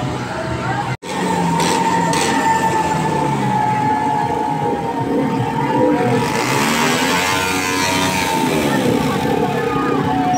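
A diesel tractor engine runs as the tractor moves slowly past, with people's voices around it. The sound cuts out briefly about a second in.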